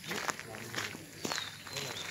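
Footsteps on a dirt path, several steps, with faint voices in the background and a thin high whistle in the second half.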